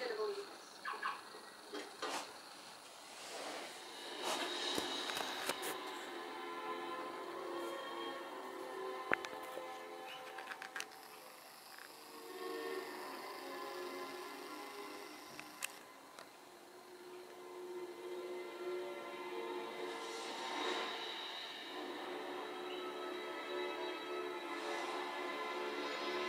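Music from a television programme's soundtrack, played through the TV's speakers in a small room: long held notes that swell and fade, with a couple of sharp clicks near the middle.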